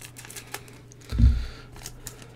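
Light ticks and rustling of a foil Pokémon booster pack being handled, with one dull thump about a second in.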